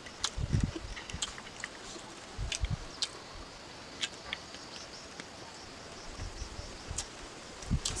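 Close-up eating sounds of a person chewing a mouthful of rice and pickle: scattered wet mouth clicks and lip smacks, with a few soft low thumps.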